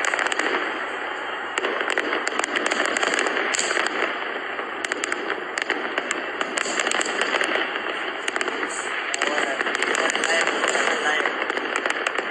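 Fireworks popping and crackling, with many sharp cracks over a continuous rushing wash of noise and voices.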